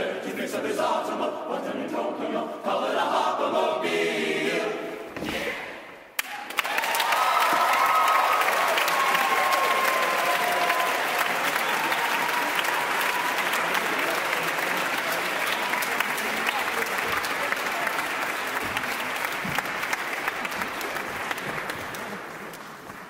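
A large men's a cappella chorus sings the last bars and closing chord of a song, which dies away about five seconds in. Then a theatre audience breaks into loud, sustained applause, with whoops just after it starts.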